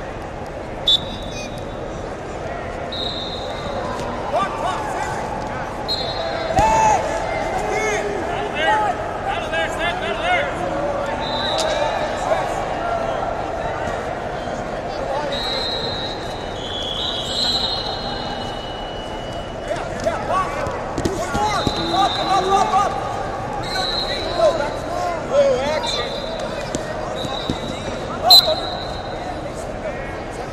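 Wrestling hall din: many short, shrill referee whistle blasts from mats around the hall, over coaches and spectators shouting, with a few sharp thuds on the mats.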